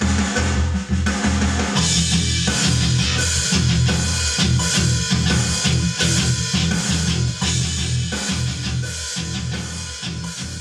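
Progressive metal music playing: a full drum kit with bass drum and snare under a heavy, low rhythm part that stops and starts in quick, tight chugs.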